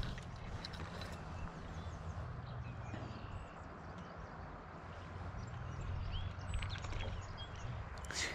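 Quiet creek-side ambience: a steady low rumble of wind and water with scattered short bird chirps, and a few soft ticks about three-quarters of the way through.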